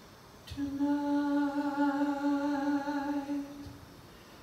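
A man humming one steady, held note into a microphone for about three seconds, starting about half a second in.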